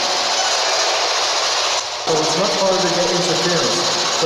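SB11 spirit box sweeping through radio stations: a loud, choppy static hiss that drops out for a moment about halfway. After the drop a man's voice is heard over the static.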